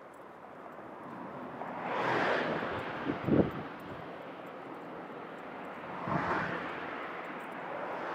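Road traffic passing close by: one vehicle sweeps past about two seconds in and another about six seconds in. A short, loud low rumble of wind hitting the microphone comes just after three seconds.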